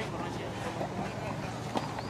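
Indistinct voices over a steady low hum of outdoor ambience, with one sharp knock near the end.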